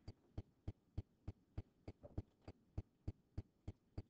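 Faint, evenly spaced ticks or thumps, about three a second, keeping a steady beat throughout.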